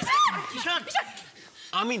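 A man yelping and barking in imitation of a dog: a quick run of short, high cries, then a lower, louder bark near the end.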